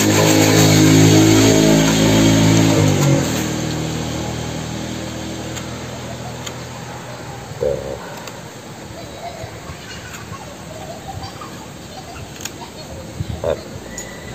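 A steady, loud motor drone, like a passing engine, fills the first three seconds and then slowly fades away. After that come a few faint clicks of a blade cutting woody roots.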